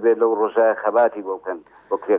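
A man speaking continuously. The voice sounds thin, with little bass or treble, like a radio broadcast.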